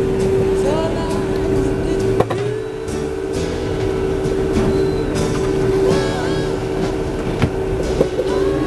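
Steady hum of a moving tour coach heard from inside the cabin, with a voice talking over it and a sharp click about two seconds in.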